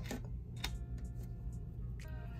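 Soft background music with a few light ticks from fingers and nails pressing and peeling a paper planner sticker.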